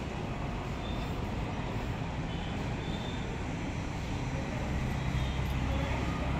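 Steady rumble of road traffic and heavy vehicles.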